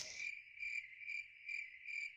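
Crickets chirping faintly: a steady high trill that swells about twice a second.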